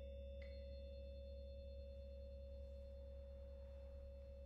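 Hand-hammered Tibetan Mani singing bowls ringing faintly: one struck bowl's steady tone is held and slowly fading, and a light mallet tap about half a second in adds a higher ringing note.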